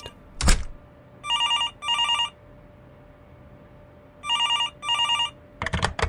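A telephone ringing in a double-ring pattern, two short rings then a pause, heard twice. A thump comes before the ringing, and a click follows just before the end.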